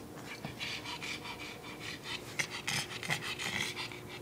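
A pug panting close by in quick, even breaths, about three to four a second.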